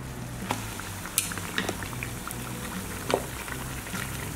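Watermelon slice dipped into a dry-ice bath in a glass bowl, the cold liquid bubbling and fizzing with a steady hiss and a few sharp crackles.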